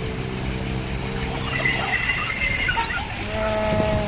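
A bus engine running close by, a steady low hum. Near the end a short, higher-pitched tone sounds over it.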